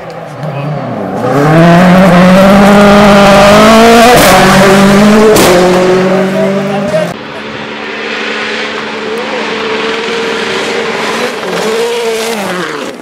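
Rally car passing at full throttle on a gravel stage, its engine note climbing in steps as it accelerates, with two sharp cracks in the middle. About seven seconds in the sound drops suddenly to a quieter, steadier engine note as the car moves away.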